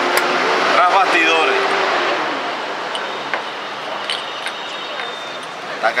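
Street traffic noise, loudest at first and fading over a few seconds, as a vehicle goes by. A sharp click just after the start, from the chess clock being pressed.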